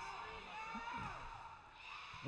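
Faint, indistinct voices from spectators and players in a gymnasium, with scattered calls over a low background hum of the crowd.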